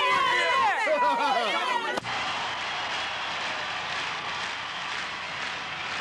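Several people's voices talking over one another, cut off abruptly about two seconds in by a steady hiss-like noise.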